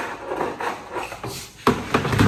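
Handling noise from a plastic trash can being picked up and moved: scraping and rustling, then one sharp knock near the end.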